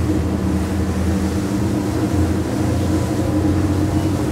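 Twin Mercury V12 600 hp outboard engines running under acceleration, a steady low drone with the rush of wind and water over the hull.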